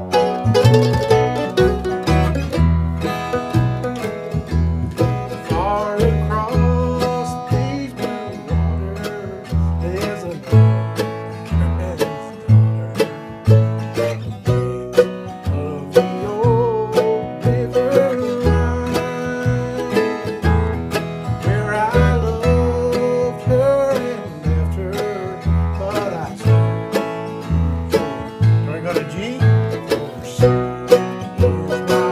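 Bluegrass band of mandolin, upright bass and acoustic guitar playing a country song, the plucked upright bass keeping a steady beat under the mandolin and guitar.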